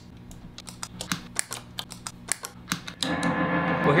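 Guitar effect pedal footswitches clicking one after another as a whole pedalboard is switched on by hand, over a faint hum. About three seconds in, a steady drone comes up: the chain's own noise, raised by distortion pedals and split into many octaves by pitch-shifter pedals, with nothing being played.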